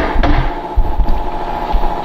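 Handling noise from a hand-held camera being moved: uneven low rumble with a sharp knock at the start and a few softer knocks, over a faint steady hum.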